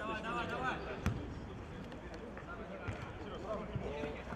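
A ball kicked sharply about a second in, with a few lighter kicks later, on an outdoor football pitch. A man's voice shouts at the start.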